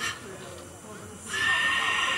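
A short knock at the start, then a loud, high, voice-like cry held at one pitch for about a second near the end.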